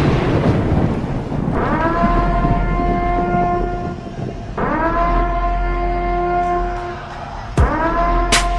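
Dance-competition mix played loud over a hall sound system: a noisy sweep, then three long horn-like blasts about three seconds apart. Each blast drops briefly in pitch as it starts, then holds steady.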